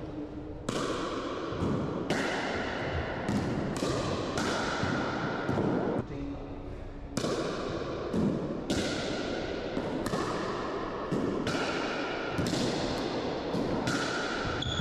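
A pickleball rally: paddles striking the hard plastic ball and the ball bouncing, a sharp hit every second or so, each ringing on in the heavy echo of an enclosed racquetball court.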